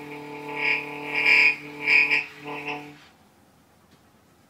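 Free improvisation on clarinet, trombone and viola with electronics: a held low note with overtones under three loud high swells, cutting off about three seconds in.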